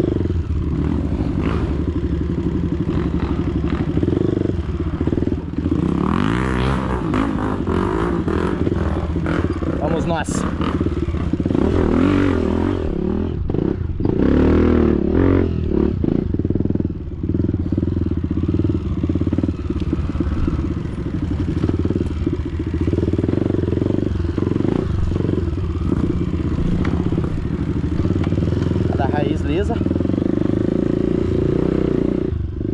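Dirt bike engine running on a rough forest trail, its pitch rising and falling as the throttle is worked up and down. Clattering and rattling from the bike over rough ground come through several times in the middle.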